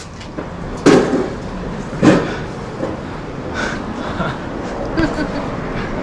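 Two sharp knocks about a second apart, then softer scattered knocks and faint voices over steady outdoor street background.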